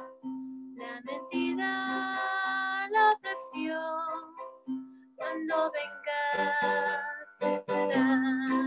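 A Spanish-language church hymn sung by a girl's voice over instrumental accompaniment, in held notes and short phrases, heard through a video call.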